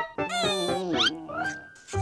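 Comic sound effect: a whiny, falling, voice-like squeal, then a quick rising whistle and a short held tone.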